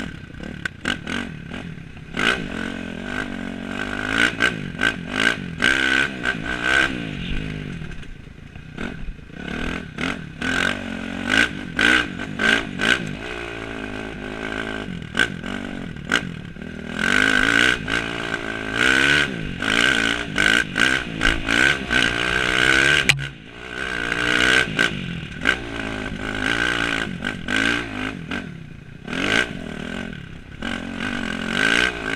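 Dirt bike engine revving up and down again and again as the rider works the throttle over rough trail, close to the rider's helmet, with rattles and knocks from the bike over rocks and roots. The engine eases off briefly about three quarters of the way through.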